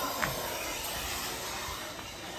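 A steady, even hiss from studio equipment runs without a break.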